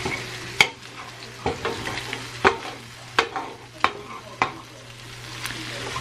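Scrambled eggs, chicken strips and sausage sizzling in a stainless steel frying pan, with a spatula scraping and knocking against the pan bottom about once a second.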